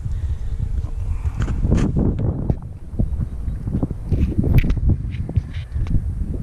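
Wind rumbling on the microphone, with scattered light footsteps and knocks on concrete as the camera is carried around the parked motorcycle.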